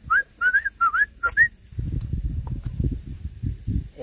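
A person whistling a quick run of about five short notes that rise and waver. This is followed, from about halfway through, by a low rumbling rustle.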